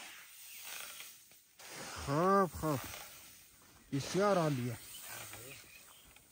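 Swishes of threshed wheat grain being scooped with a shovel and swept with a broom on a plastic tarp. Two loud drawn-out calls, each rising then falling in pitch, about two and four seconds in.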